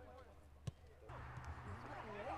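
Faint background voices with a single sharp knock, like an impact, about two-thirds of a second in. A steady low hum and louder background noise come in just after a second.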